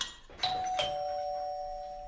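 Two-note doorbell chime, a 'ding-dong': a higher note about half a second in, then a lower one, both ringing on. Someone is at the door.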